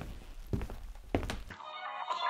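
A few dull knocks over a low rumble, then background music starts suddenly about one and a half seconds in.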